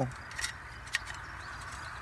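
Two faint light clicks of the folding sheet-metal BCB cooker stove being handled and set up, over a steady low outdoor hiss.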